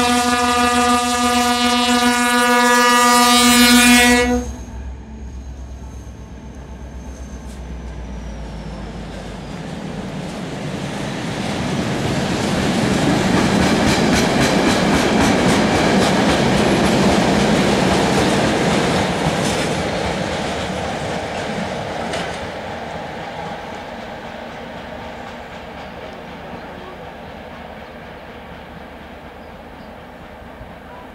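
M62M diesel locomotive's horn sounding one long blast that cuts off about four seconds in, over the locomotive's low engine rumble as it passes close by. Then the train of tank wagons rolls past, the wheels clattering over the rail joints, loudest midway and fading as the train moves away.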